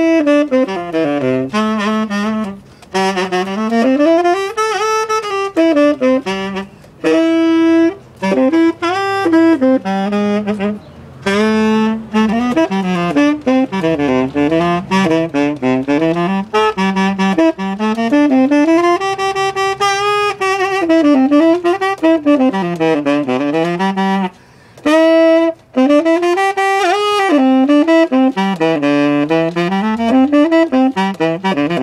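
Solo tenor saxophone playing an unaccompanied melodic line in long, winding phrases, broken by a few short gaps.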